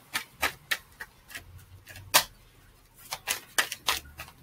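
Tarot cards being handled: a run of irregular sharp clicks and taps, the loudest about two seconds in.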